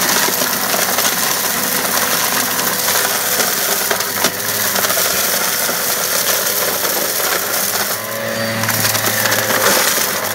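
Eureka upright vacuum running as it sucks up a pile of sand, coins and mixed debris, with hard bits rattling and clattering up through the nozzle and hose.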